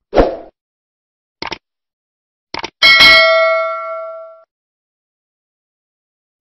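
Subscribe-button animation sound effects: a soft pop, two small clicks, then a click and a bright bell ding that rings out and fades over about a second and a half.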